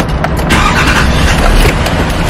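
Car running, heard from inside the cabin as a steady low rumble, with frequent small knocks and rubbing from a handheld camera moved against the interior trim.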